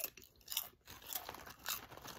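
A person chewing a crunchy chip close to the microphone, a few sharp crunches about half a second apart.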